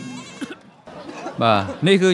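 A man speaking excitedly in broadcast commentary, starting about a second in after a quieter stretch.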